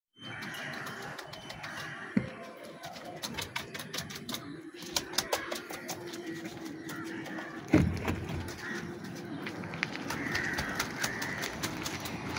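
Birds calling over a run of light clicks and taps, with a sharp knock about two seconds in and a louder thump near eight seconds.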